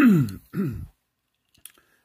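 A man coughing in two short bursts, the first and louder right at the start and the second about half a second later, each dropping in pitch.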